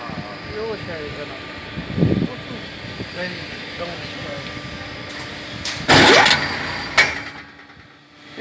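Steady machine hum with a few steady tones. A loud rushing burst comes about six seconds in and a sharp click a second later, after which the hum dies away.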